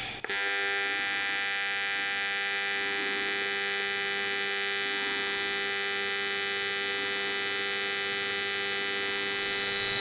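AC square-wave TIG arc on aluminum plate, set to a balanced 50/50 wave. It strikes just after the start and holds as a steady, even buzz, with the high-intensity cleaning action of the balanced wave plainly heard in it.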